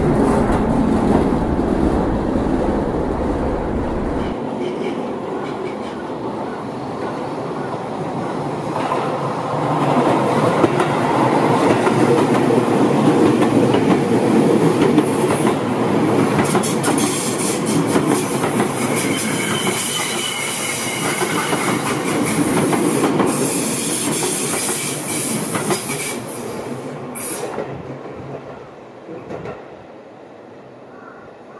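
Electric commuter trains running past close by: a continuous rumble and clatter of wheels on the rails, growing louder from about ten seconds in, with a faint high whine around twenty seconds, then fading near the end.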